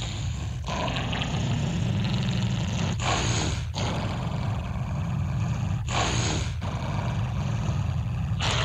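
Distorted, roaring noise over a steady low drone opening a heavy metal track, breaking off briefly every few seconds, before the guitar riff comes in.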